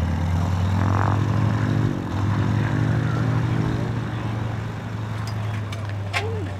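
Biplane's piston engine and propeller running steadily close by, a low drone, with a second engine tone wavering in pitch through the middle. A few sharp clicks near the end.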